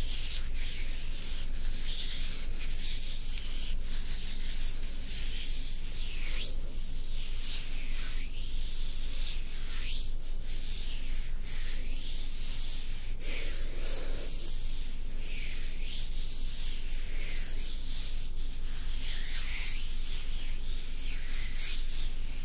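Hands rubbing and stroking a large smooth, grainy grey stone up close, a dry scratchy hiss that swells with each stroke every second or two.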